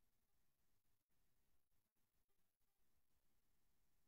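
Near silence: only the stream's faint noise floor, with no speech coming through.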